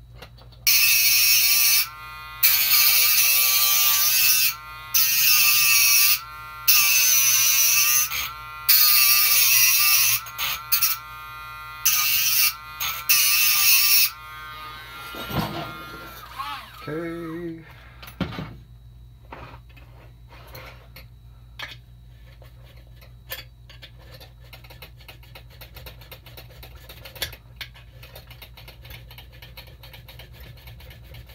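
A Dremel rotary tool grinding into a key blank held in a vise. It runs in about seven bursts of one to two seconds, its whine dipping under load as it widens the warding cut. After the first half it stops, leaving faint handling clicks.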